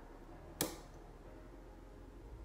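A single short spritz from the pump atomizer of a glass perfume bottle, about half a second in.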